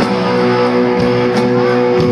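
Electric guitars and bass of a live rock band holding one sustained, ringing chord, loud and steady, with little drumming under it.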